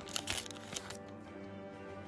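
Foil wrapper of a trading card pack crinkling and tearing open in a short crackly burst during the first second, over soft background music of steady held notes.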